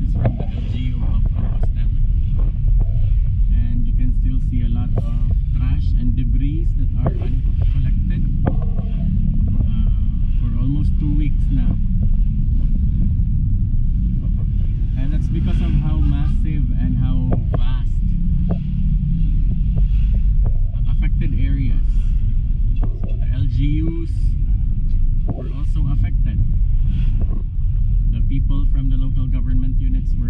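Steady low rumble of a car driving slowly in traffic, heard from inside the cabin: engine and road noise.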